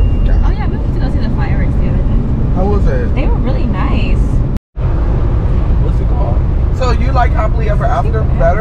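Steady low rumble of car road and engine noise heard inside the cabin while driving, with quiet talking over it. The sound drops out completely for a moment about halfway through.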